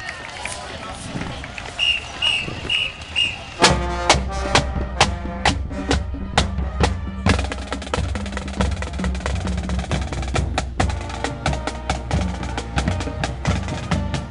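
Four short, evenly spaced whistle blasts, then a marching band drumline starts a drum cadence almost four seconds in: snare drums and bass drums playing a steady, driving rhythm.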